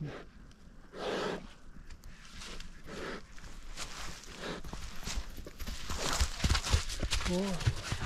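Footsteps and rustling in dry leaves and grass, growing busier in the second half with dull thumps among the crackles.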